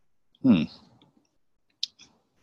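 One short, sharp click near the end: a computer click made while trying to advance a presentation slide that is stuck and won't move forward.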